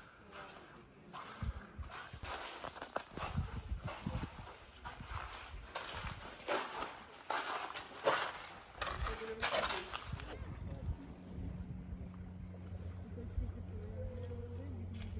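Footsteps on the wet sand and rock floor of a sea cave, irregular steps for about ten seconds. The sound then changes to a steady low hum.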